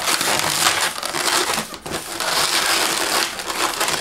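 Latex 260 modelling balloons rubbing and squeezing against each other and against the hands as one is twisted and locked into another's pinch twists: a continuous rubbing rustle with a brief dip a little under two seconds in.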